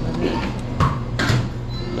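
Two short rustling noises about half a second apart, from things being handled, over a steady low hum in the background.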